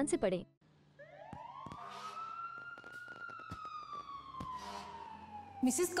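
A single siren-like gliding tone, rising over about two seconds and then falling slowly for about three, with faint ticks scattered through it.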